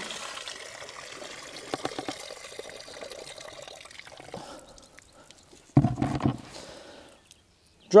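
Water and soaked pellets poured from a bucket into a mesh strainer, the water running through the mesh and trickling away for about four seconds. About six seconds in there is a short thump.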